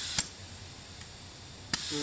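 Compressed air hissing through an inflator chuck into a tubeless Sur Ron rear tyre as it is pumped toward 40 PSI to seat the bead. About a fifth of a second in, a sharp click and the hiss drops to a fainter level, with another click near the end.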